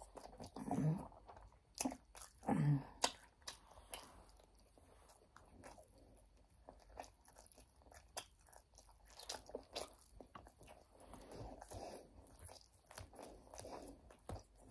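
A person chewing and biting crispy fried chicken close to the microphone: faint, irregular crunches and wet mouth clicks, with a couple of short hums in the first three seconds.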